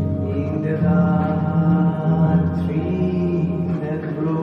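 Electronic keyboard playing slow, sustained dark chords, with a quiet melody moving above the held low notes.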